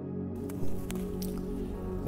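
Soft instrumental background music with steady held tones, and a short soft noise about half a second in.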